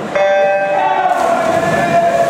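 Electronic starting tone of a swim-meet start system, starting abruptly about a quarter second in as a steady pitched beep that holds on, sending swimmers off the blocks.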